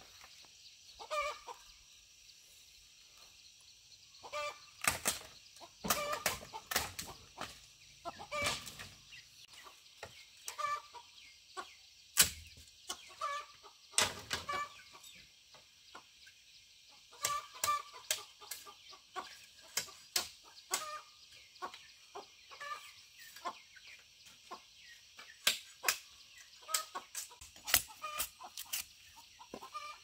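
Chickens clucking on and off, with repeated sharp knocks and clatters of bamboo poles being handled, loudest about five, twelve and fourteen seconds in and again near the end.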